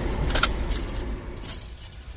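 Car keys jingling on their ring where they hang from the ignition: a few light, irregular jingles over the car's low steady hum.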